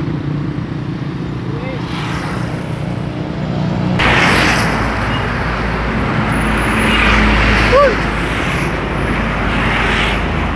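Road traffic noise from passing vehicles: a steady low engine hum, then about four seconds in a sudden louder rush of traffic noise with a deep rumble that peaks near the eighth second.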